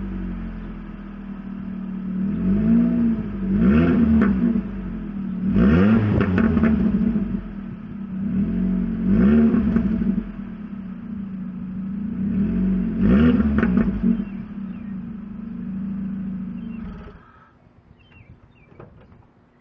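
2005 Ford Focus ZX3's 2.0 Duratec inline-four, fitted with a custom cold air intake and with its resonator cut off, idling and blipped up and down about six times through the exhaust. The engine stops about a second before the end.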